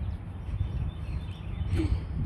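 Outdoor background noise: a steady low rumble of wind on a phone microphone, with faint bird chirps.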